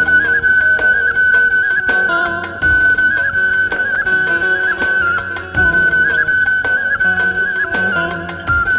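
Traditional folk music led by a flute holding a high note, decorated with quick trills, over drums with frequent strokes and a deep bass-drum hit about every three seconds.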